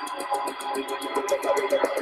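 Background music from an animated explainer video: held steady tones under a fast, even ticking beat of about ten ticks a second.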